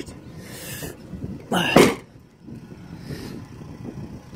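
A man's loud, breathy sigh just under two seconds in, after a brief hiss of handling noise.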